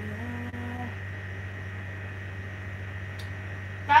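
Steady low electrical hum with room tone; a faint sung note trails off in the first second.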